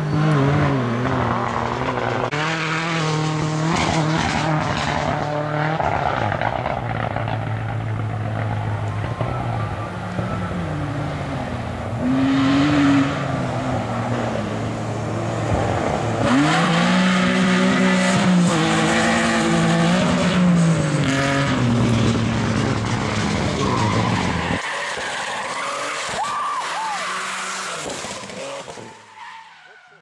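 BMW E30 rally car's engine revving hard, pitch climbing and falling through gear changes as the car slides on a loose dirt stage, with tyre skidding. It is loudest as the car passes close about two-thirds of the way in, then fades out near the end.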